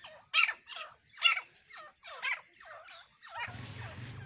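A series of short animal calls, about eight of them, irregularly spaced.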